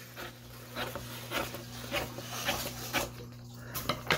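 Scissors cutting across a sheet of white printer paper: a run of short snips, about two a second.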